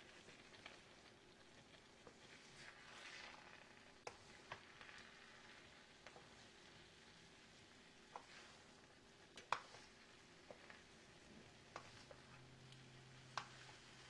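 Very faint sizzling of chicken and vegetables frying in a pan, with scattered light clicks of a wooden spoon against the pan as the food is stirred; the loudest click comes about nine and a half seconds in.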